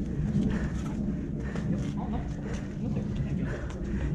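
Indistinct voices of people talking at a distance, over a low steady background.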